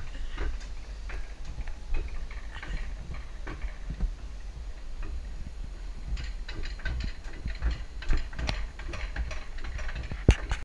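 Rail-guided bobsled cart running along its track: a steady low rumble with frequent irregular clicks and clacks from the wheels on the rail.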